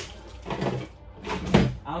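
Household knocks from someone searching through furniture: a sharp click at the start, fainter rustling about half a second in, and a loud thump about a second and a half in, like a cupboard door or drawer being shut.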